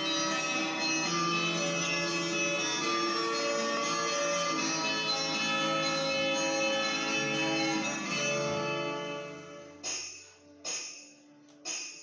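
Electronic keyboard playing an instrumental intro in held, sustained chords and melody. Near the end it breaks into three short struck chords, each fading away before the next.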